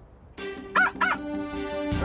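Cartoon score holding a sustained chord. About a second in, a cartoon robot dog gives two short honk-like barks.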